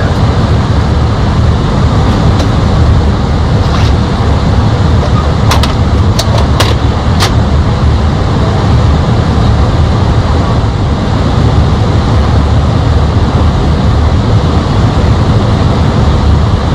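Steady, loud rush of airflow and engine noise in an Airbus airliner's cockpit in flight during the descent, heaviest in the low rumble. About four sharp clicks come close together around the middle.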